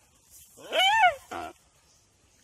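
A deer being eaten alive gives a distress bleat: one loud wavering cry that rises and then falls in pitch, followed by a shorter, rougher cry.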